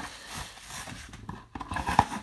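Cardboard mailer rubbing and rustling as a bubble-wrapped card is slid out of it by hand, in uneven scraping strokes with a short pause near the end.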